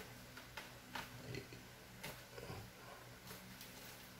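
Faint, scattered light clicks and taps, irregular and a fraction of a second to a second apart, from a clear plastic tarantula enclosure being handled, over a low steady hum.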